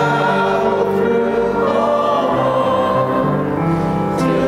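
A small church choir singing a slow closing choral response, with long held notes.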